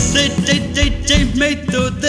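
Burmese pop-rock song: a sung lead vocal over a band, with a steady drum beat of about two beats a second.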